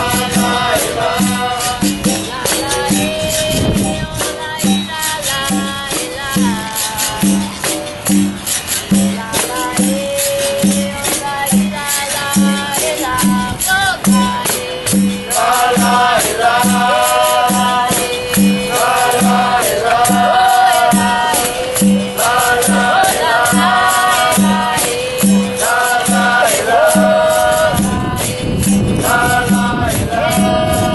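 Capoeira roda music: berimbaus, pandeiros and an atabaque drum playing a steady rhythm, with singing over it. From about halfway through, a group chorus sings short repeated answering phrases.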